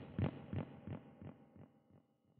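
A low thump repeating about three times a second, each repeat fainter than the last, dying away like an echo tail.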